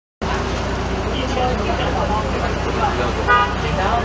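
Inside a city bus: the engine's steady low rumble under nearby voices, with one short vehicle horn toot about three seconds in.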